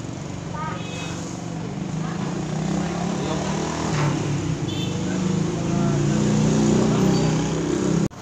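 A motor vehicle engine running nearby, growing steadily louder over the seconds, with voices in the background and a single click about halfway through.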